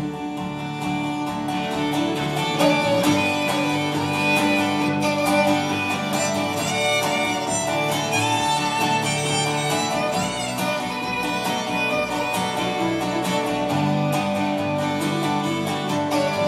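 Instrumental break of a folk-rock song played live: a fiddle melody with wavering, sliding notes over strummed guitar.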